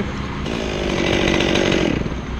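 Two-stroke chainsaw revving up about half a second in and held at a steady high speed, then dropping back near the end, over a steady low hum.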